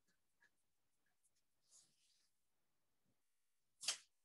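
Near silence, room tone, broken by one brief, sharp click just before the end.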